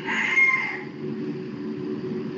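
A rooster crowing in the background, the call ending about a second in, over a steady low hum.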